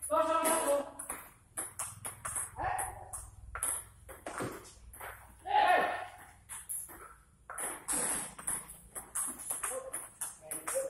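Table tennis rally: the celluloid ball clicking in quick, irregular succession off rubber paddles and the table top, with people's voices in between.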